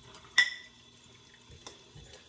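A sharp clink with a short ring about half a second in, the glass mason jar knocking at the faucet, then a faint thin stream of tap water running into the jar, weak from low well-water pressure.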